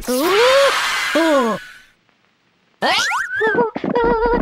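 Cartoon boing sound effects: two springy pitch bends that rise and then fall within the first second and a half. After a short silence, quick rising glides lead into music near the end.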